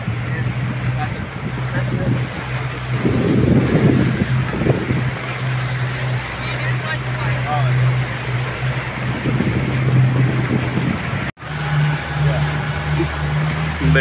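Motorboat engine running steadily as a low hum, with wind and water noise from the boat under way. About eleven seconds in the sound cuts out for an instant and the engine hum resumes at a slightly higher pitch.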